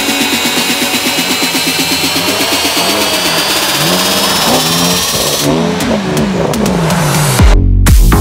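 Car engines revving up and down while sliding on snow, mixed with a music track. Near the end the music switches suddenly to a dance track with a heavy bass beat.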